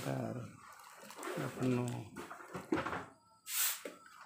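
Voices talking quietly, with a brief hiss a little before the end.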